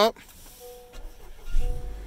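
2018 Honda Accord Sport 2.0's turbocharged four-cylinder engine started by push button. A faint two-note chime sounds first; about a second and a half in the engine cranks and catches with a brief surge, then settles into a low idle.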